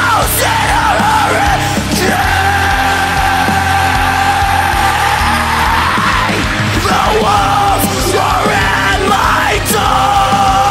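Heavy metal backing track with a man screaming vocals over it. A long held note comes in about two seconds in and lasts some four seconds.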